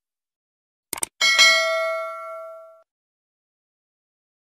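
Subscribe-animation sound effect: a quick double click about a second in, then a notification-bell ding that rings and fades out over about a second and a half.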